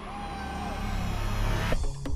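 Build-up sound effect for an intro: a swelling rush of noise with a high whistle sliding down and a low rumble growing underneath, cut off abruptly near the end. Electronic music with a beat starts right after it.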